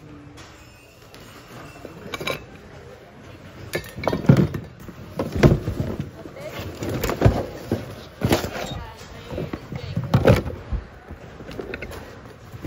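Hands rummaging through a bin of mixed secondhand goods: objects shifting and knocking against each other and the plastic bin. Quiet at first, then a run of sharp clattering knocks through the second half.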